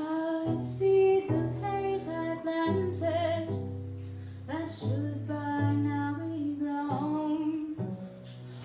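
A woman singing a slow melody to her own bowed cello accompaniment; the cello holds long, steady low notes beneath the voice.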